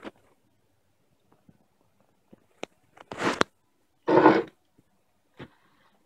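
Handling noise on the test bench: a few faint clicks, then two short rustling scrapes about three and four seconds in, the second the louder.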